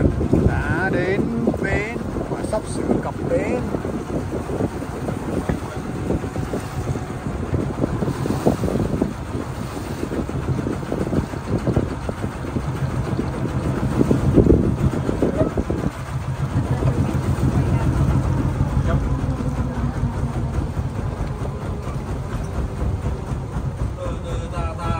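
A small river boat's engine running steadily under way, a constant low drone with wind on the microphone; it swells briefly about halfway through.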